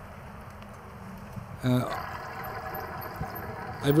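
Steady wet hiss of a bicycle riding on a rain-wet street: tyres on wet pavement, with a brief spoken "uh" about halfway through and speech returning at the end.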